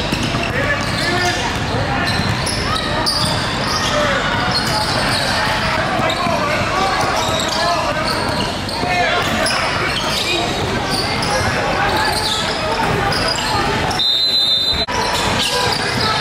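Live court sound of a youth basketball game in a large gym: a basketball being dribbled on the hardwood floor, under players and spectators calling out and talking.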